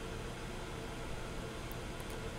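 Steady background noise: an even hiss with a low hum and a faint steady tone, unchanging throughout.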